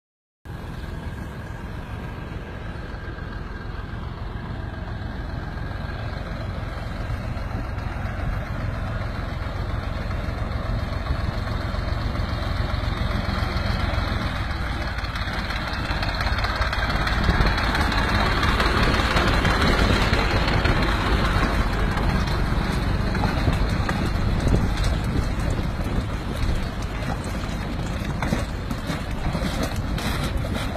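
A train running on its track: a steady rumble and rush that grows louder over the first two-thirds and eases a little near the end.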